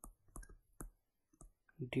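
Stylus tip clicking and tapping on a touchscreen while handwriting: a string of short, sharp, irregular clicks.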